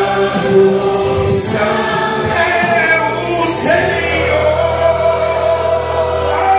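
Gospel hymn sung by several voices together over instrumental backing, with long held notes.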